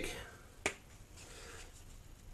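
A single sharp plastic click about a third of the way in, from handling the cap of a bottle of tire dressing.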